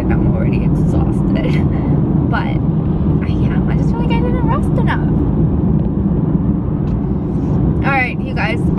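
Steady low road and engine rumble inside the cabin of a moving Mercedes-Benz car, with a woman's voice speaking now and then over it.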